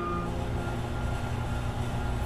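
Steady low rumble and even hiss of automated timber-processing machinery in a production hall, with no distinct strokes or impacts.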